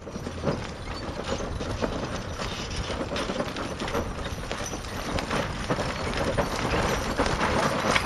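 A team of harnessed mules pulling a wagon at a run: a dense, continuous clatter of hoofbeats with the rattle of harness and wagon, growing a little louder toward the end.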